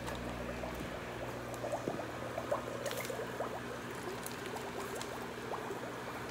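Air bubbling up through water in a plastic tub from an aquarium air line: a steady run of many small bubbles over a low, steady hum.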